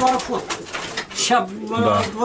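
Racing pigeons cooing in the loft, with a low held coo in the second half, under a man's talk.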